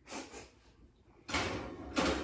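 Cast-iron skillet being set back on a wall oven's wire rack and the rack pushed in: a short scrape at the start, then a longer, louder metal scraping that ends in a clunk.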